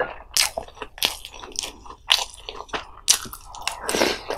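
Close-miked chewing of pollack roe and milt from a spicy fish roe soup: irregular sharp, wet mouth clicks and smacks, a few a second. Near the end a spoonful goes into the mouth.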